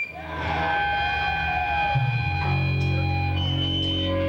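Live rock band's electric guitars holding long, steady ringing notes through the amplifiers, with a low bass note coming in about two seconds in. The sound dips briefly right at the start.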